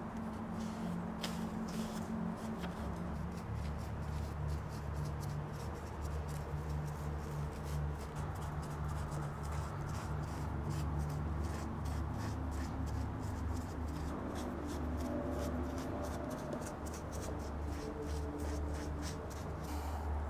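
Gloved hand rubbing and brushing black gel stain onto a carved Monterey cypress wood stand: soft, irregular scratchy strokes over a steady low hum.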